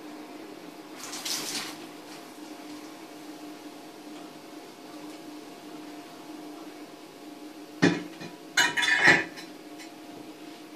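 Metal hookah parts clanking as they are handled: a sharp knock, then a short clatter of ringing metal knocks near the end. Before that there is a steady low hum and a brief hiss about a second in.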